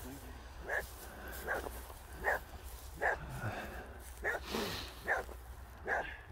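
A dog barking repeatedly: seven short barks, each a little under a second apart, with one longer pause midway.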